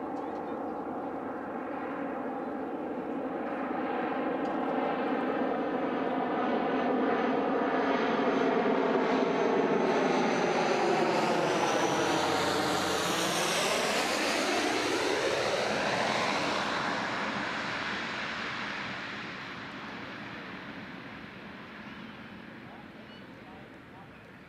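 Pilatus PC-6 Porter flying low overhead on approach. Its engine and propeller drone grows louder, peaks around the middle, drops in pitch as the aircraft passes, and then fades.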